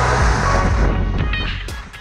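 Skis scraping and hissing across firm piste snow through a turn, the hiss swelling in the first second and then fading, with background music underneath.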